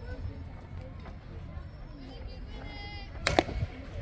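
A fast-pitch softball smacking into the catcher's mitt with one sharp pop near the end, the pitch called a ball. Faint voices and low wind rumble run underneath.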